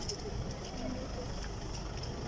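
Low, steady rumble of vehicle engines idling, with faint voices in the background.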